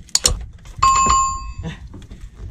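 Two quick sharp clicks, then a bright metallic bell-like ring that starts just under a second in and dies away over about three quarters of a second.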